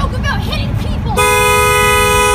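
City bus horn sounding one long, steady two-tone blast starting about a second in, over a low engine rumble and people shouting.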